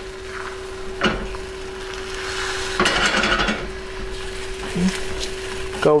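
Rubber spatula stirring and scraping beaten eggs in a non-stick frying pan as the omelette sets, with a faint sizzle. A short knock about a second in and a longer scrape near the middle. A steady hum runs underneath.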